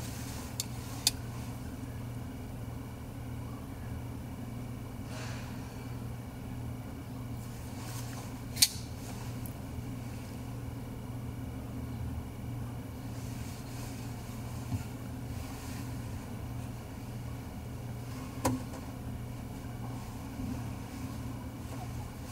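A steady low background hum, with about five short sharp clicks from a titanium-handled custom flipper knife being handled; the loudest click comes about a third of the way through.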